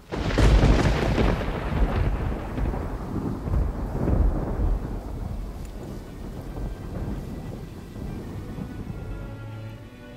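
A loud noisy crash that starts suddenly and dies away over several seconds into a long low rumble.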